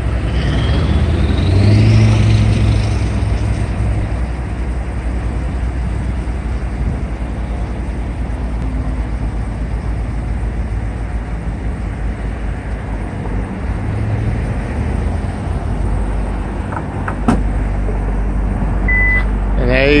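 2017 Corvette Grand Sport's 6.2-litre V8 idling steadily while its power convertible top folds down, with a rising mechanism whine in the first few seconds. A sharp click comes near the end, then a short beep.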